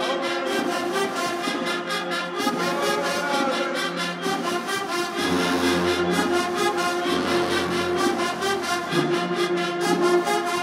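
Marching band brass section playing loud sustained chords, with low bass horn notes coming in about five seconds in.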